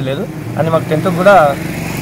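A man speaking, with a motor vehicle's engine running steadily in the background; the engine comes to the fore near the end as the talk pauses.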